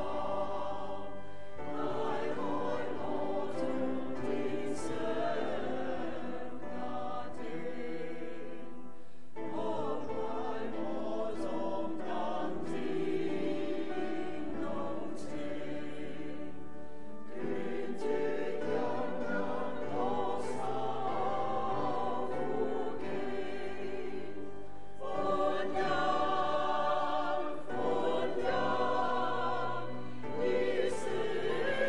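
A choir singing a slow hymn in long sustained phrases, with brief breaks between the phrases.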